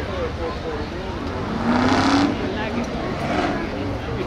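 Ford Crown Victoria race cars' V8 engines running around a dirt oval, with one car passing close about halfway through, its engine rising in pitch as it accelerates.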